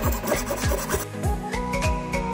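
Hacksaw sawing through PVC pipe, a scratchy noisy sound for about the first second, over background music with a steady beat.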